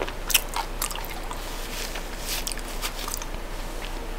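Close-miked chewing of chocolate with many short, sharp mouth clicks, the loudest just after the start.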